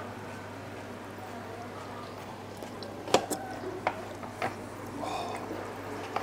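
Eating sounds at a table: wet chewing and slurping of curry noodles, with a few light clicks of utensils against a bowl a little past the middle, over a steady low hum.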